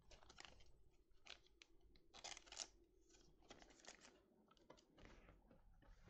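Faint rustling and clicking of a small stack of trading cards being handled and flipped through, a string of short scrapes with the loudest about two and a half seconds in.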